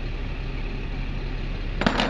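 A single sharp clack near the end, as a pair of metal kitchen scissors is set down among knives and spoons on a plastic truck-bed liner, over a steady low engine hum.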